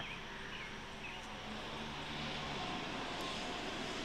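A distant engine droning steadily, its pitch drifting slowly, over outdoor background noise.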